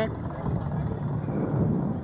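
Roller coaster train climbing the lift hill: a steady, low mechanical noise with wind on the microphone.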